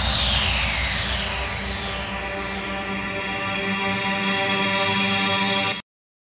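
Electronic soundtrack music: a swoosh sweeping down in pitch over a held synth chord, which cuts off suddenly just before the end.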